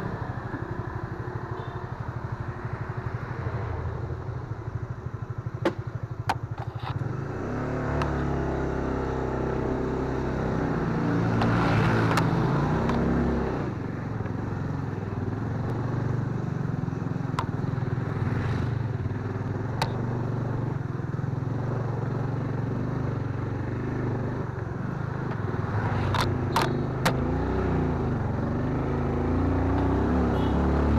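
Motorcycle engine running while being ridden along a narrow road, heard from on the bike, its pitch rising and falling with the throttle. A few sharp clicks and clatters stand out along the way.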